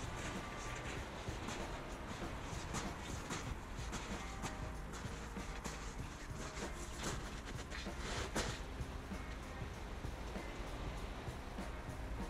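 Faint background music over a low rumble of wind on the microphone, with scattered crunching clicks, the loudest about eight seconds in.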